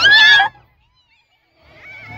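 Several high-pitched voices shrieking, as riders do on a Ferris wheel. The shrieks cut off suddenly about half a second in, leaving about a second of dead silence before faint crowd voices return near the end.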